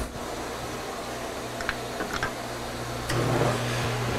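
A few light clicks over a low hum, then a metal lathe starts up about three seconds in and runs with a steady hum as its chuck spins.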